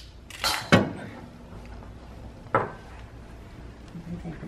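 Small metal parts handled at a metal workbench jig: a short scraping rustle, a sharp clink just under a second in, and a softer knock about two and a half seconds in.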